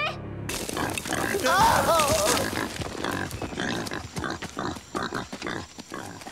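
Cartoon soundtrack: a short, wavering pitched cry from an animated character about a second and a half in, followed by a quick run of clicks and knocks from sound effects.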